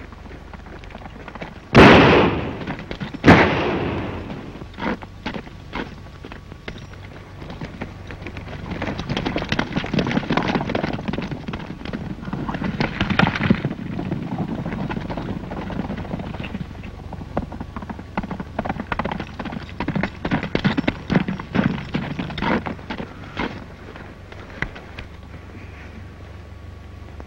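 Two gunshots about a second and a half apart, each with a ringing tail. Then a long run of rapid horse hoofbeats and scuffling on turf that fades near the end.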